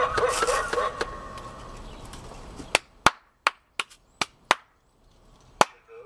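The animated skeleton butler prop's recorded cackling laugh through its small built-in speaker, trailing off about a second in. It is followed by a string of about eight sharp clicks with near silence between them.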